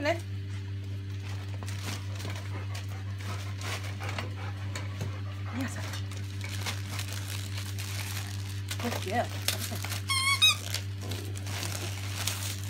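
Christmas wrapping paper rustling and tearing as dogs nose and pull at a wrapped present, in many small scattered crackles. A short high wavering squeak comes about ten seconds in.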